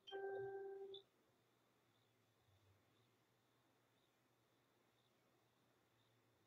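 A single steady electronic beep, about a second long, right at the start. After it comes near silence, with faint ticks about once a second.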